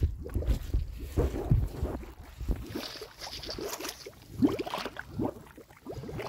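Gas bubbling up through a muddy puddle, gurgling irregularly as the bubbles break the surface. The gas is taken for natural gas escaping from the ground.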